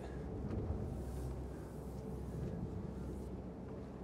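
Steady low drone inside a Princess F65 flybridge motor yacht under way: its twin MAN V8 diesels and hull noise, heard through the accommodation.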